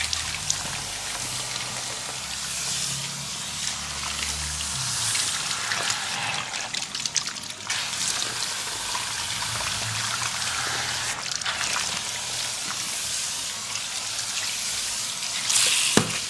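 Water from a handheld sink sprayer running steadily over a shaved scalp and splashing into a shampoo basin, with a louder surge of water just before the end.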